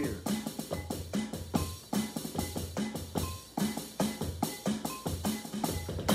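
Drums played with sticks in a steady, even groove: repeated kick-drum thumps under sharp snare and rim strikes.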